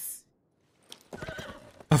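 Soundtrack of the anime episode playing quietly: a man's short line of dialogue ends just after the start. After a brief pause comes a fainter, rough sound lasting about a second.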